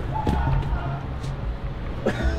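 Indistinct voices in the background over a low, stepping bass line of music, with a couple of light knocks.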